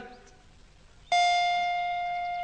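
A single bell-like chime sound effect strikes about a second in and rings on as one steady tone, fading slowly.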